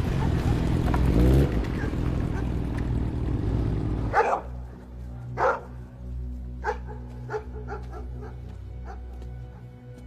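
A motorcycle engine running as the bike rides along the street, stopping abruptly about four seconds in. A dog then barks: two loud barks, followed by several quieter ones.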